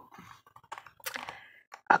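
A few faint clicks and a short rustle as a hardcover picture book is handled and tilted in the hands.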